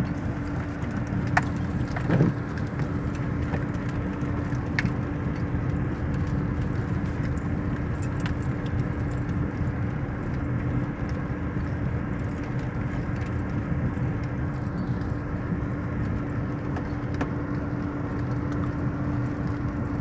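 Car cabin noise while driving along a gravel road: a steady engine hum and tyre rumble, with a few light clicks.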